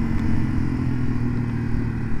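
Yamaha TW200's 196 cc overhead-cam single-cylinder engine running steadily at an even pitch.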